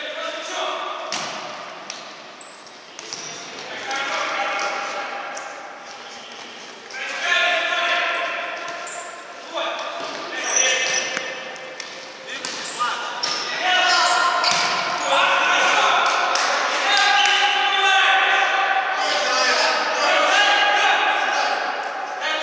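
Futsal play in an echoing sports hall: the ball thuds off players' feet and the wooden floor, with players' shouts and calls coming often, above all in the second half.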